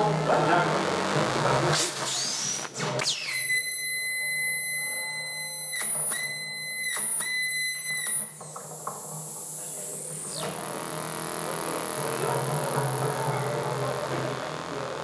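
Live experimental noise music played on an amplified homemade box of springs and metal rods. It opens with dense scraping noise over a low hum. About three seconds in, a high, steady whistling tone cuts in, breaks off briefly twice and stops at about eight seconds, and from about ten seconds a low buzzing drone takes over.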